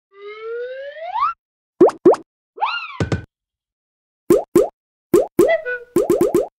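Cartoon sound effects. A whistle-like glide rises at the start. Then come three pairs of quick rising pops, and a short up-and-down squeak ending in a thud about three seconds in.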